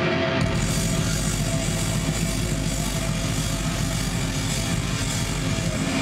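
Live punk rock played loud: heavily distorted electric guitar through stacked amplifiers in a dense, steady wall of sound.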